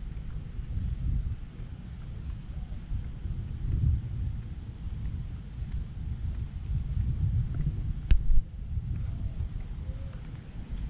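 Steady low outdoor rumble, like wind buffeting the microphone of a moving camera. Two brief high bird chirps come a few seconds apart, and a single sharp click about eight seconds in.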